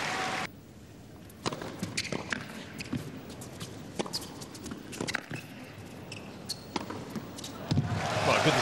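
Crowd noise that cuts off abruptly about half a second in. Then a quiet indoor arena with a series of sharp tennis-ball bounces on the hard court as the server bounces the ball before serving.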